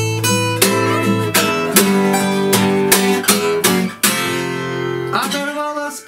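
Two acoustic guitars playing together in an instrumental passage of a song, chords strummed at a steady pace over held bass notes, with no singing.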